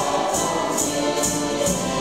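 A mixed group of men and women singing a folk song together over music with a steady beat, with a high jingling accent about twice a second.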